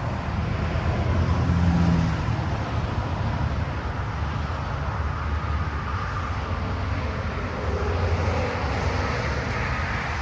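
Steady low outdoor rumble of road traffic, swelling briefly about a second or two in.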